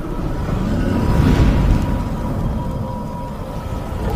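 Cinematic intro sound effect: a deep, continuous rumble with a whoosh that swells about a second in and fades, under a faint steady high tone.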